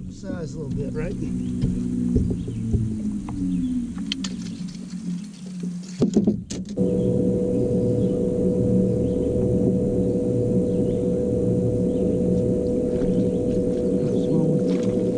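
Electric trolling motor on a bass boat running, its hum wavering in pitch. After a few clicks about six seconds in, it settles into a steady, louder hum.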